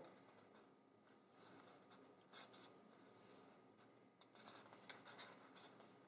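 Near silence, with a few faint rustles and rubs of a thin ribbon and card stock being handled and pressed into place by hand.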